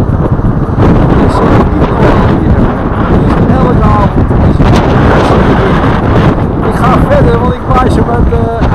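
Wind buffeting the microphone, loud and constant, over the steady rush of motorway traffic passing below.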